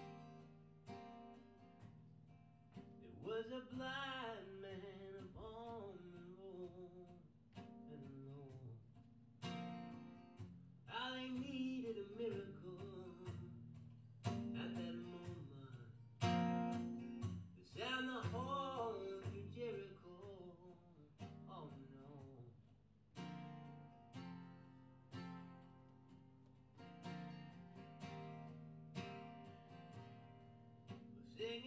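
Live folk music: two acoustic guitars picked and strummed, with a male voice singing in phrases over them.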